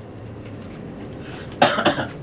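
A man coughs near the end, a short harsh burst after a stretch of low room hush.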